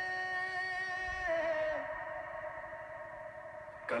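A singer's long held note in a devotional song, sustained and then gliding down to a lower note about a second in before fading over a faint steady drone. Music and singing come back in at the very end.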